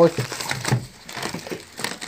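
Crinkling plastic food packaging and a mesh bag of garlic bulbs being handled on a worktop, with a few sharp clicks and knocks.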